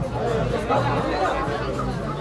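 Overlapping indistinct chatter of several people, with background music and its bass line running underneath.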